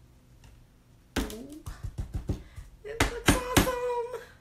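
A run of about ten quick taps and knocks on a plastic rinse-water container, from a paintbrush rapped against it, starting about a second in, the loudest three near the end. A held hum of voice sounds under the last second.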